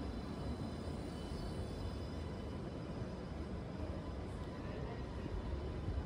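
Sydney light rail tram (Alstom Citadis) beside the listener, a steady low hum with faint high whining tones, over the general rumble of a busy city street.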